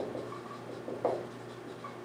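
Dry-erase marker writing on a whiteboard in a few short, faint strokes.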